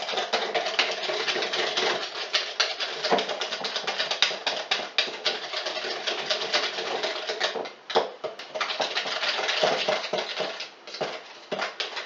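Hand whisk beating a cheesecake filling in a tall jug: rapid, continuous clicking and scraping against the container, with brief pauses about two-thirds of the way through and again near the end.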